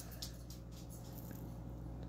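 Faint wiping of a stain-soaked sponge across a pine shelf, over a low steady hum, with a soft tick just after the start.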